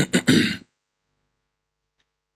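A man clearing his throat close to a microphone: three quick rasps over about half a second, right at the start.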